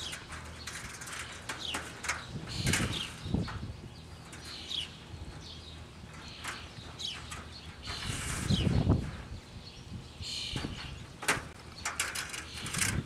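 Thin steel tie wire being threaded, pulled tight and twisted through galvanized chicken-wire mesh to sew a seam: scattered clicks, scratches and small squeaks of wire on wire, with a louder rustle about eight to nine seconds in.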